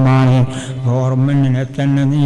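A man's voice chanting into a microphone, holding long syllables at an almost level pitch with a brief dip about half a second in.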